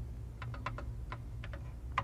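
Computer keyboard being typed on: a quick, irregular run of key clicks over a steady low hum.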